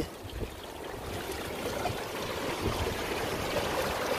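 Water running and trickling off a whitebait net as it is lifted and emptied, growing gradually louder.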